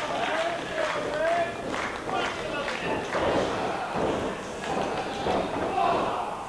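Spectators shouting and calling out, several voices in a hall, too ragged to make out words.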